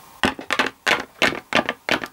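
Plastic Littlest Pet Shop figures tapped along a wooden floor as footsteps, an uneven run of sharp taps about four a second.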